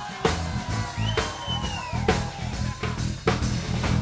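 Live band playing an instrumental vamp: drum kit hits over a steady bass line, with a guitar note sliding in pitch about a second in.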